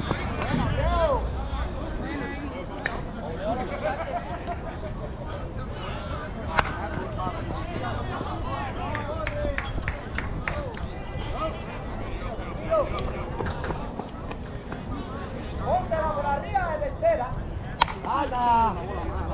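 Scattered voices and shouts from players across an open ball field, over a low steady outdoor rumble. There is a sharp knock about six and a half seconds in. Right at the end, an aluminium softball bat cracks against the ball as the batter swings.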